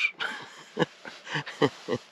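A man laughing to himself in a run of short, breathy chuckles, about half a dozen over two seconds.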